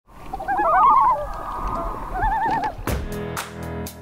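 An animal call with a rapidly quavering pitch sounds twice, the first one loudest. About three seconds in, music with a drum beat starts.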